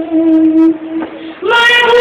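A boy singing a line of an Urdu ghazal, holding one long note, then leaping to a higher, louder note about one and a half seconds in.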